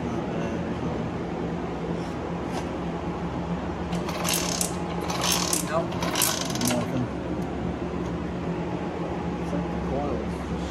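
A hand tool working on a motorcycle engine's side cover: three short runs of metallic ratcheting clicks between about four and seven seconds in, over a steady low hum.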